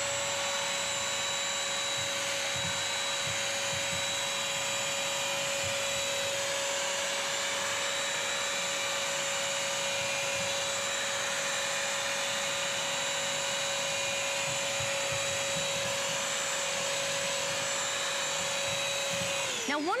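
Bissell CrossWave wet/dry vacuum running with a steady high motor whine as its brush roll scrubs and sucks up a wet mess of melted ice cream on tile. It shuts off just before the end.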